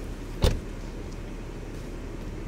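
Rear air suspension of a BMW 630d Gran Turismo being adjusted at the push of a console button: a single sharp clack about half a second in, over a steady low rumble.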